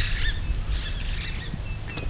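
Wild birds chirping sparsely with short, high-pitched calls over a steady low outdoor rumble.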